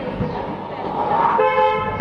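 A long breathy exhale of hookah smoke, swelling toward the end. About one and a half seconds in, a steady pitched horn-like tone sounds for about half a second.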